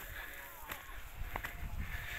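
Footsteps on a climbing path, a few faint scuffs and clicks, with a low rumble on the microphone building about a second in and faint voices in the background.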